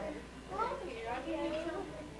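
Indistinct, fairly high-pitched voices talking over one another, over a faint steady low hum.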